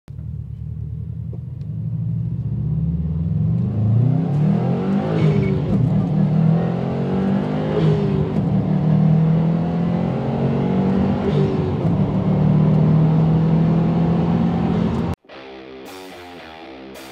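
2018 Subaru STI's turbocharged 2.5-litre flat-four engine accelerating through the gears, its pitch climbing and dropping several times before cutting off suddenly near the end.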